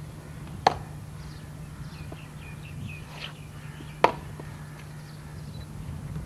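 Two sharp boot stamps on the parade-ground tarmac, about three seconds apart, as cadets march up and come to attention. A steady low hum runs underneath, and faint high chirps fall between the stamps.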